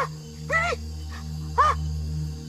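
A man's short, high-pitched yelps of pain, three in a row, each rising and falling in pitch.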